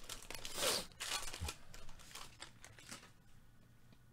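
Wrapper of a 2022 Bowman Draft jumbo trading-card pack being torn and crinkled open by gloved hands. A flurry of crinkling and ripping over the first three seconds dies away to quiet.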